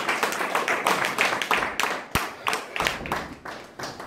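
Small audience applauding, the clapping thinning out and fading toward the end, with a single dull thump about two seconds in.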